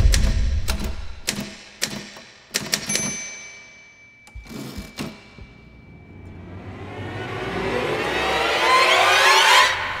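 A run of sharp, irregular clacks that thin out and fade over the first three seconds. Then a horror-film music swell of many sliding, clashing tones builds from about halfway to a loud peak just before the end.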